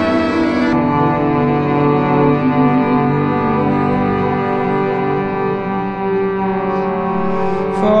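Instrumental passage of a live string-band song: long held bowed-string notes over a low bass, the chord shifting about a second in and then sustained.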